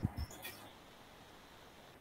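A couple of faint low thumps and a few short high squeaks in the first half second or so, then near silence.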